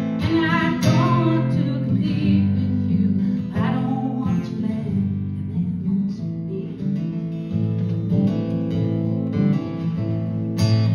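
Acoustic guitar strummed live, chords changing every second or so, playing a folk-country cover song.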